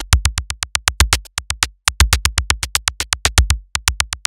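Electronic drum loop of sharp clicky hits, about eight a second with two short breaks, each hit carrying a short sub-bass sine tone from the SLAP plugin's subharmonic synth, playing through its transient shaper.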